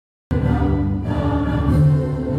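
A crowd singing together with musical accompaniment, long held notes, cutting in suddenly about a third of a second in.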